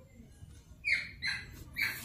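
Pen writing on paper: three short, high, squeaky scratches, the first about a second in and the last near the end.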